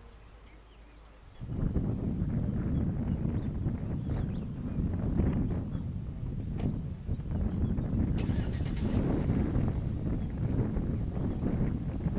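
Wind buffeting the microphone in gusts, starting about a second and a half in, with a brief high hiss about eight seconds in. Faint short high chirps repeat roughly once a second underneath.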